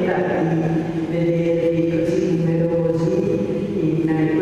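A single voice, amplified, drawn out in long held notes like a chant.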